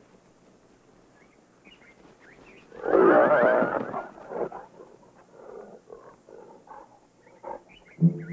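Hyena and vultures squabbling over a carcass: a loud, rough snarling growl about three seconds in, followed by shorter, quieter calls. A few small bird chirps come about a second and a half in.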